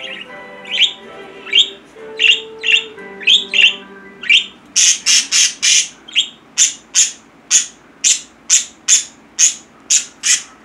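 Pet budgerigars calling with short, sharp chirps, each dropping in pitch. The chirps come irregularly at first, then louder and steadier at about two a second through the second half.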